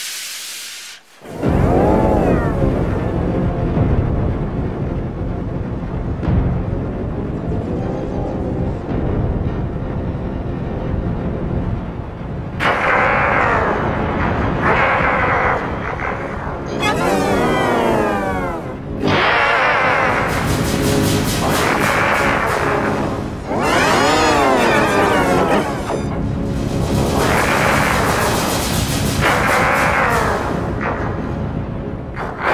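Loud, heavily distorted 'G Major' meme-edit audio, with layered pitch-shifted copies of a children's TV soundtrack. A brief hiss and a short break come first. A dense low rumble then kicks in, and about halfway through repeated wavering, swooping tones join it.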